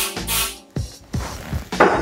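A short hiss of aerosol gun oil (Remington Oil) sprayed into a shotgun barrel, ending about half a second in, over background music with a steady beat.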